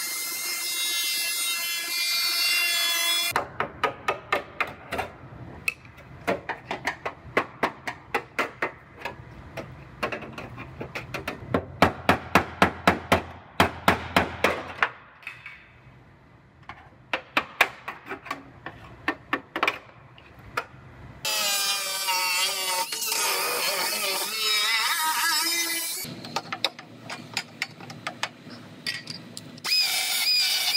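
Pneumatic cut-off wheel whining as it cuts through car-body sheet metal. After about three seconds it gives way to a long run of sharp, irregular metal knocks and taps, with a short lull in the middle. From about 21 seconds in, another air tool runs with a wavering whine that drops lower near the end.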